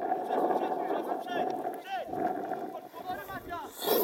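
Footballers shouting during a match, calls coming and going over a steady hum that stops about three seconds in, with a brief loud rush near the end.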